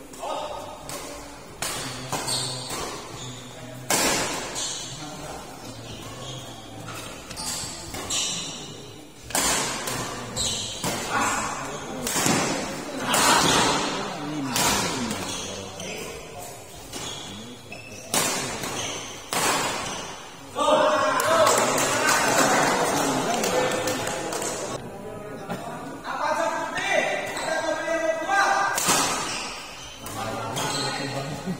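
Badminton rackets striking the shuttlecock in fast rallies in a large hall, a string of sharp hits at uneven intervals, with men's voices calling out between them.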